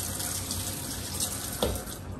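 Kitchen faucet running into a metal sink as hands are rinsed under the stream, a steady rush of water. A short knock comes about a second and a half in.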